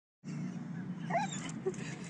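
A dog gives one short whine about a second in, over a steady low background hum; it is eager for a stick to be thrown for it.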